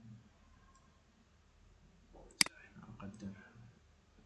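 A single sharp computer mouse click about two and a half seconds in, over quiet room tone.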